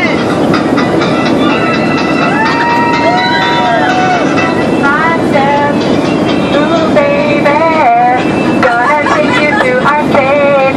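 Steady roar of an airliner cabin, with a crowd of passengers talking and calling out over it and one long drawn-out voice or tone held for about a second and a half.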